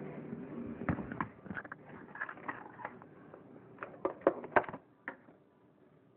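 Handling clatter in a kitchen: a run of sharp knocks and clicks as things are picked up and moved, the loudest a quick cluster about four seconds in.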